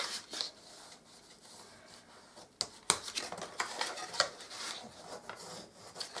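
Score lines on folded card being burnished: a faint, light rubbing and scraping with a few small sharp clicks, the clearest about three seconds in.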